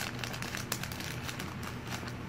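Faint, irregular crinkling and crackling of a small toy packet's wrapper as it is handled and opened by hand.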